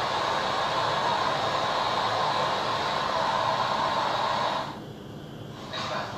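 A steady rushing noise that cuts off about five seconds in.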